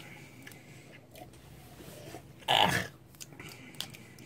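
A short, loud vocal burst from a person, not a word, about two and a half seconds in, over quiet room tone, with a few faint clicks near the end.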